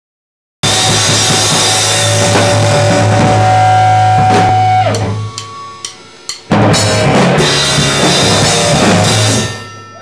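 Live rock band, drum kit with cymbals and electric guitars, playing loudly and cutting in abruptly. Around five seconds in it drops to a few scattered hits, then the full band crashes back in and dies away near the end.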